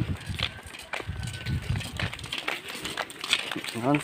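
Faint, indistinct voices with scattered light clicks and knocks.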